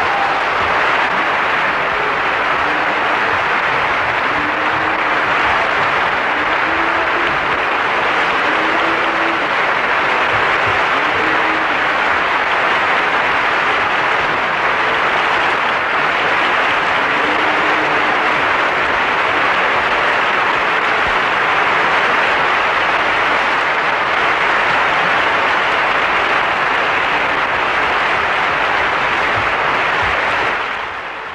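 Large audience applauding steadily and at length. A few faint short tones show under the clapping in the first half.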